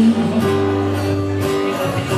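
Live acoustic band playing an instrumental bar between sung lines: strummed acoustic guitar with a bowed cello holding long low notes.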